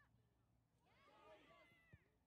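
Faint shouting from several voices at once, starting about a second in, with a brief thump near the end.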